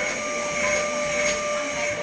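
Canister vacuum cleaner running with a steady whine.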